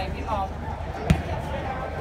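A football kicked once: a single sharp thud about a second in, over the chatter of voices around the pitch.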